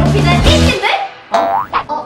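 Cute background music with a line of speech that stops just under a second in, followed by a comic cartoon 'boing' sound effect whose pitch sweeps quickly upward.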